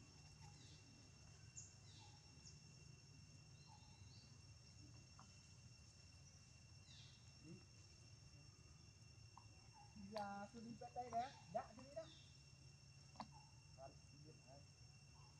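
Quiet forest ambience: a steady high insect drone with scattered short bird chirps. About ten seconds in come a few brief, faint voice sounds.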